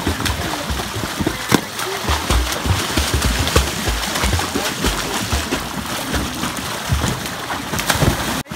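Pool water splashing and churning steadily as swimmers kick and paddle on inflatable pool floats, with many short sharp splashes and irregular low thuds throughout.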